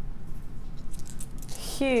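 Strung faceted labradorite beads clicking lightly against each other as they are lifted and handled, in a few scattered clicks with a busier patch about a second in.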